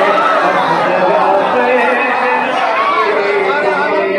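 An audience of men calling out together in acclaim, many voices overlapping one another.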